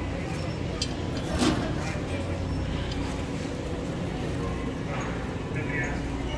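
Supermarket produce-section room tone: a steady low hum with faint background chatter. A brief plastic rustle about a second and a half in comes as a thin plastic produce bag is pulled from its roll.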